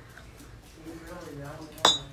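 A ceramic mug clinks sharply once near the end as it is set down after a sip, following a second of quiet.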